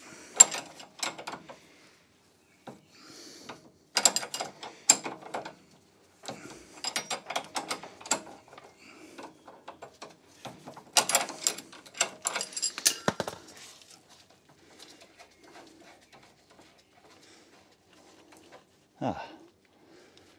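Hand ratchet clicking in four main bursts as it spins a nut off a suspension ball-joint stud, with the clicks thinning out near the end as the nut comes free.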